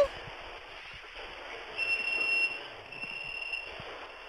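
Telephone-call audio with steady line hiss. Two steady high-pitched beeps, each under a second long, come one after the other starting a little under two seconds in.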